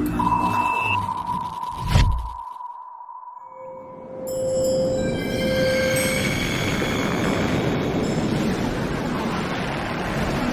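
Cinematic trailer-style music and sound design. A held electronic tone runs until a deep impact hit about two seconds in, the sound then drops away briefly, and from about four seconds a swelling rushing noise rises with short shimmering tones and holds steady.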